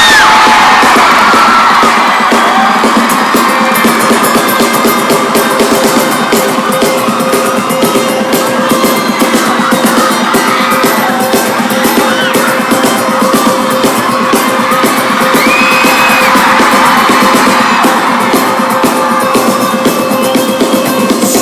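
Concert crowd screaming and cheering, with many high-pitched screams rising and falling, over a steady held chord from the stage.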